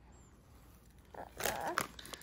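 Snack pouch of baby puffs crinkling in a hand: a short cluster of sharp rustles in the second half, after a second of quiet.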